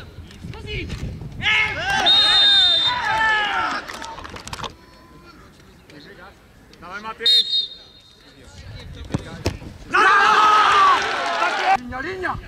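Several voices shouting at once during live football play, in two loud stretches with a quieter lull between, broken by a brief high-pitched tone and a few sharp knocks.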